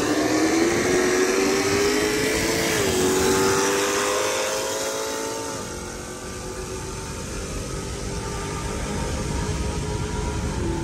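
Supercharged V8 at full throttle, heard from inside the car's cabin, its note climbing steadily with a brief dip in pitch at a gear change about three seconds in. The engine note cuts off about five and a half seconds in as the driver lifts off, leaving steady tyre and road noise.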